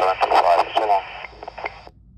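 Airband voice transmission heard through a Yaesu FT-60 handheld's speaker in AM mode, the speech sounding thin and radio-like. After about a second the voice ends and a steady high tone carries on. It cuts off sharply near the end as the carrier drops and the squelch closes.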